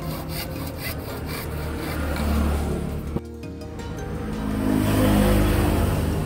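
Hacksaw cutting through a white plastic pipe, a fast rasping rhythm of about four to five strokes a second that dies away about two seconds in. Background music plays underneath and grows louder toward the end.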